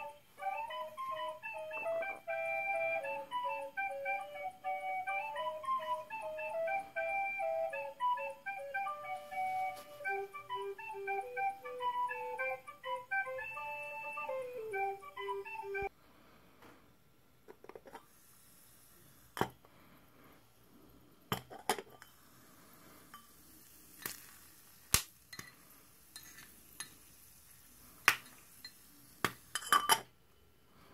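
A flute-like background melody plays for about the first half, then stops. After that come scattered sharp pops, one every second or two: popcorn kernels bursting inside a miniature popcorn maker and clinking against its metal dome lid.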